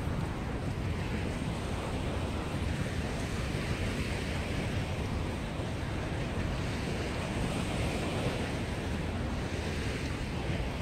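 Steady wind rumbling on the microphone over small river waves washing onto a sandy shore.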